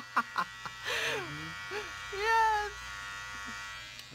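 Small battery-powered eyebrow trimmer running with a steady buzz as it trims gray hairs from an eyebrow. Short vocal sounds come over it about a second in and again midway.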